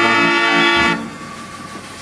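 Wurlitzer Style 125 band organ sounding a loud held chord on its pipes with a bass drum stroke, then cutting off about a second in as the tune ends.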